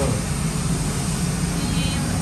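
Steady low rumbling background noise with faint voices underneath.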